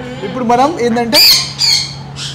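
Parrots squawking: two harsh, high screeches a little past the middle, the first the loudest, over a person's voice.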